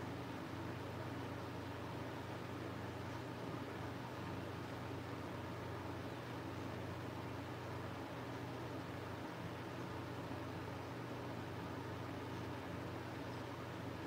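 Electric fan running: a steady, even rushing noise with a low hum under it.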